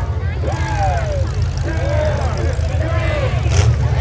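Demolition derby trucks' unmuffled engines running with a loud, steady low rumble, under the shouts and voices of spectators. A brief sharp crack comes about three and a half seconds in.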